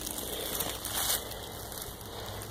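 Rustling and crackling of leafy undergrowth and dry leaf litter, an even noise with a slight swell about a second in.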